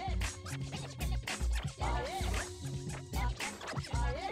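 DJ scratching a vinyl record on a turntable over a hip-hop style beat with heavy bass. Short rising swoops of scratch sound come near the start, about halfway and near the end.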